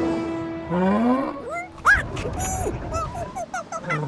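Cartoon monkey chattering: a rapid run of short, high squeaky calls, about four a second, in the second half. It is preceded by a short low rising groan and by background score music that fades out early on.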